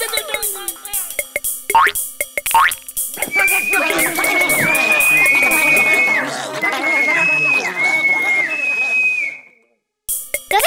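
Cartoon soundtrack: a clicking dance beat with springy boing effects in the first three seconds. Then a dense chorus of many small cartoon creature voices, over long held high notes, for about six seconds. It cuts off suddenly shortly before the end.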